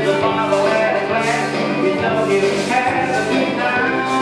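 Recorded song for sequence dancing played over the hall's loudspeakers: a singer over instrumental backing with a steady beat, about one and a half beats a second.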